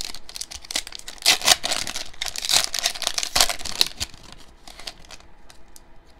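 A foil trading-card pack wrapper being torn open and crinkled by hand. The crackling is loudest from about one to four seconds in, then softer.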